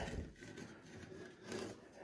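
Faint handling of a wooden frame covered in wire mesh as it is slid across and lifted off a wooden workbench, with a soft scrape about one and a half seconds in.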